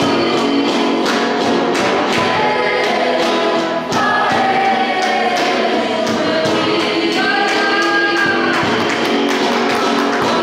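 A group of voices singing a worship song over instrumental accompaniment with a steady beat.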